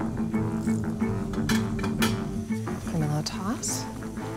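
Background music with a steady low plucked-bass line. Over it come a few sharp light knocks, about a second and a half and two seconds in, as a wooden spoon scrapes rendered guanciale and its fat out of a stainless steel frying pan.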